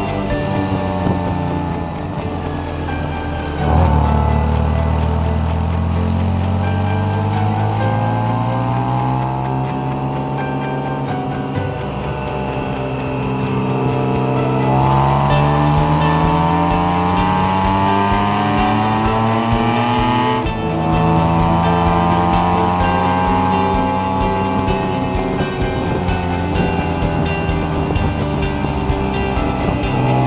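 BMW K1600 GTL's inline-six engine running under way, its pitch climbing steadily as the bike accelerates and dropping back at gear changes about four seconds in, about fifteen seconds in and about twenty seconds in.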